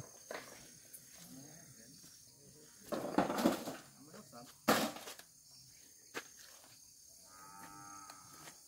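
A cow mooing in the pasture about three seconds in, over quiet rural background. A single sharp knock is heard a little before five seconds.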